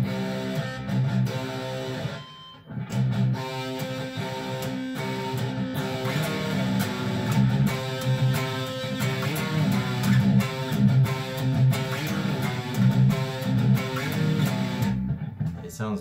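Electric guitar in drop C tuning playing a low, dark-sounding riff, with a short break about two seconds in, then steady playing that stops near the end.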